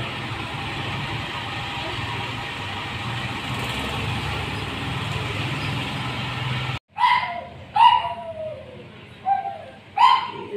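Steady background rumble with a low hum, which cuts off suddenly; then a Shih Tzu puppy yelps three times, short cries that fall in pitch, while it is held still for a vaccination shot.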